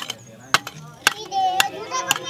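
Spoons scraping and knocking against an aluminium cooking pot, a sharp click about every half second, as the last leftover rice is scraped out of it.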